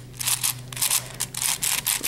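Layers of a Shengshou 6x6 plastic speed cube being turned by hand in quick succession: a rapid, irregular run of short plastic clicks and scrapes.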